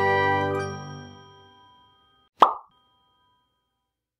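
Title-card music sting with sustained chords fading out over about two seconds, then a single short pop sound effect with a brief ringing ding about two and a half seconds in.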